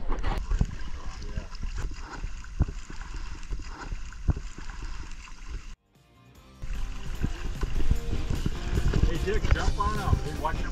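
Water slapping and splashing against a small aluminum boat's hull in a run of short irregular knocks, under background music. The sound drops out for a moment just past halfway, then resumes with voices starting near the end.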